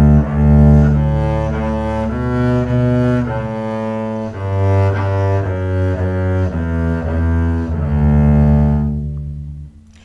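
Double bass bowed arco in first position, playing a slow series of sustained notes that change about every second, using open strings and the first and fourth fingers (the first finger pattern). The last note is held longest and fades out shortly before the end.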